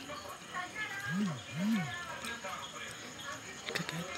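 Two short, low hummed "hm" sounds from a man's voice, each rising then falling in pitch, about half a second apart.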